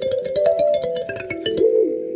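Kalimba played in a quick run of plucked notes whose metal tines ring on over one another, the notes thinning out near the end.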